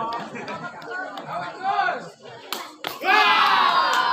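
Spectators talking and calling out over one another, with a couple of sharp knocks about two and a half seconds in, then loud shouting from about three seconds in.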